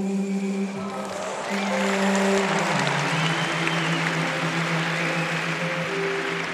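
Slow music with long held notes plays over an arena's sound system, and about a second and a half in, audience applause swells up beneath it, following a pair's twist lift.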